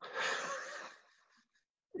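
A person's breathy exhale, unvoiced and about a second long, fading out.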